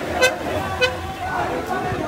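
A horn gives two short toots, about a quarter second in and just under a second in, over the voices of a marching crowd.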